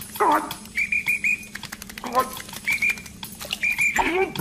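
A cartoon character's wordless vocal noises, short grunts and mumbles, twice, with quick runs of high squeaks in between.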